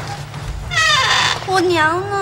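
A girl's high-pitched voice calling out: a loud, wavering cry about a second in, then a shorter, lower call.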